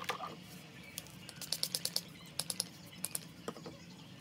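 Light, quick clicking taps from makeup being dabbed onto the face: a run of about six in the middle, then a few more scattered near the end.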